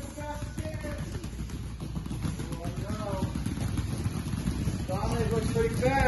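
Rapid scuffing and pattering of children pushing kick shields across a foam training mat on bare feet, growing louder toward the end, under faint children's voices.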